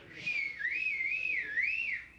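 A person whistling one wavering, fairly high note that dips and rises in pitch about three times.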